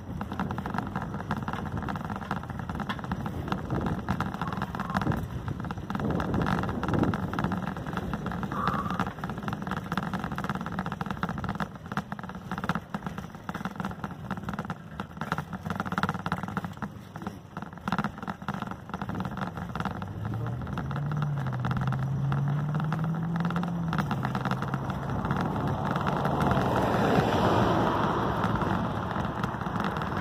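Steady wind and road noise from riding along a street. About two-thirds of the way through, a vehicle engine's note rises in pitch, holds, and then grows louder near the end.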